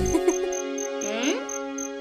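Crickets chirping in an even pulsing rhythm, about three chirps a second, over soft sustained background music with a brief rising note near the middle.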